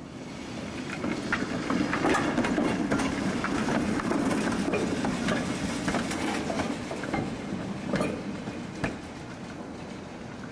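A 1944 Pullman-Standard PCC streetcar rolling past on its track. The running noise swells as it passes, with steel wheels clicking over the rails, then eases off, with a couple of sharper clicks near the end.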